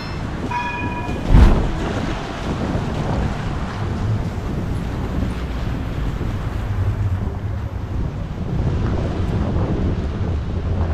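Outdoor street ambience: wind buffeting the microphone over a steady traffic rumble. There is a short beep about half a second in and a sharp knock just after.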